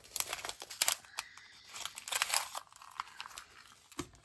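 A small clear plastic packet being torn open and crinkled by hand, in irregular bursts of crackling.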